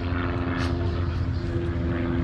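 An aircraft passing overhead: a steady, even engine drone.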